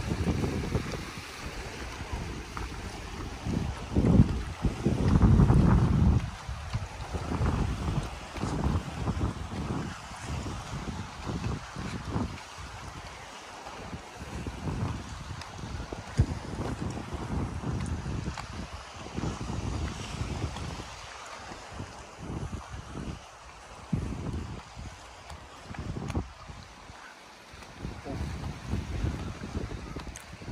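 Wind buffeting the microphone in irregular gusts, with a low rumble that is loudest about four to six seconds in.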